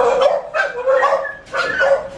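Pet dogs barking loudly, several barks in quick succession.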